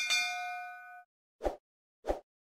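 Bright notification-bell ding sound effect, struck once and ringing out for about a second. About a second and a half in comes a short, soft pop.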